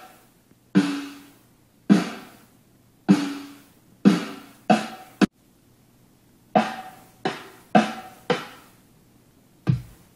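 Sparse drum hits played back in a recording studio: about eleven single strikes, each with a ringing decay. They come roughly a second apart, pause briefly past the middle, then come closer together.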